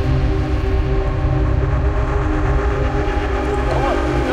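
Intro-sting sound design: a loud, steady low rumble under a held chord of several sustained tones, like a drone.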